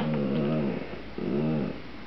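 Dachshund growling to demand a chip: a low, pitched grumble running into the first second, then a second shorter one about halfway through. It is a begging growl, not an aggressive one.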